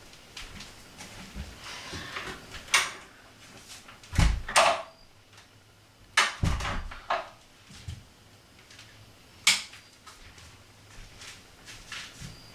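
A bathroom door being handled and shut: scattered knocks and rattles with two heavy thumps near the middle, then a single sharp click near the end as the lights go out, typical of a wall light switch.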